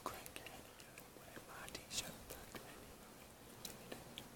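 A man's voice, faint and close to whispering, with a few small clicks scattered through it, the sharpest about two seconds in.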